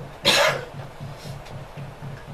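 A man coughs once, close to a microphone: one short, loud burst about a quarter second in.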